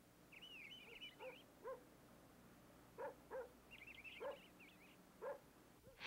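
Faint morning ambience: a dog barks about half a dozen short times in the distance while small birds twitter in two brief bursts.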